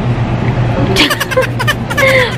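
A steady low background hum, then about a second in a quick run of short, sharp bursts with snatches of voice: a woman giggling.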